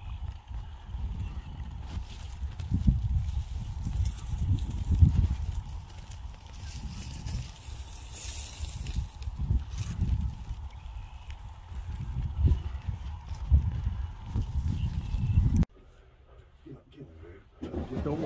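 Gusty wind buffeting the microphone over the distant massed calling of a huge snow goose flock; the sound cuts off suddenly near the end.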